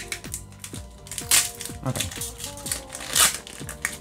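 A foil booster pack wrapper is pulled open by hand without its pull tab, crinkling in two loud bursts, one about a second and a half in and one just past three seconds. Background music plays throughout.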